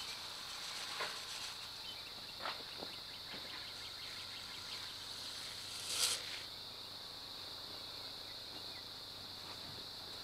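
Steady, high-pitched drone of insects in the field, holding one even pitch throughout. A few brief scuffs break over it, the loudest about six seconds in.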